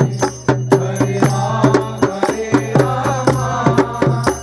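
Group devotional chanting (kirtan): voices singing over a steady low drone, with hand claps and percussion keeping an even beat of about two to three strokes a second.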